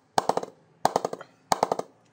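Wooden bat mallet tapping the face of an Aldred Titan willow cricket bat in the mid-high area of the blade, testing how the bat sounds. Three quick runs of about four sharp knocks each.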